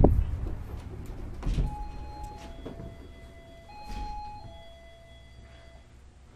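A thump as the shop's front door is pushed open, then an electronic door-entry chime sounding a falling two-note ding-dong twice.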